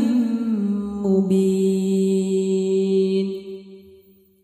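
A single voice chanting Qur'an recitation draws out the closing word of a verse. The pitch glides down slightly, settles on one long steady note, then fades away near the end.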